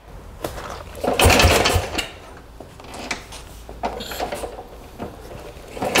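Kick-starting a 1936 Calthorpe M4 500 cc OHV single-cylinder motorcycle: a hard kick about a second in turns the engine over with a mechanical clatter and a couple of low thumps, followed by lighter clicks and rattles of the lever, and another kick begins at the very end. The engine does not start.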